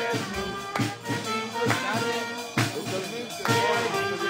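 Upbeat music with a steady beat, with people's voices mixed in.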